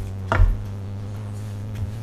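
A single sharp tap on the cloth-covered table as a tarot card is put down, with a fainter tick near the end. A steady low hum runs underneath.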